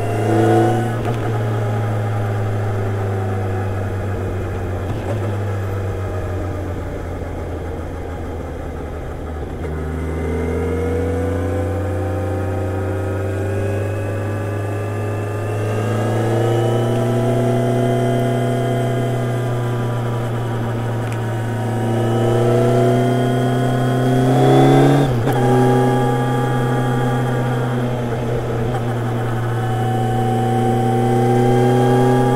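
Kawasaki Ninja 1000SX inline-four engine running under way at cruising speed, heard from the rider's helmet. Its note climbs gradually twice, with a sharp drop in pitch near the end.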